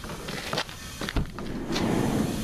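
Cargo van's side door being unlatched and opened: a few sharp clicks, a heavy thump a little after a second in, then a rushing noise as it opens.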